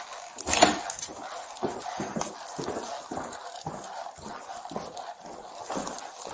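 Footsteps and the rustle and knock of clothing and gear against a body-worn camera as an officer walks through a house, a string of short irregular knocks with a sharper one about half a second in.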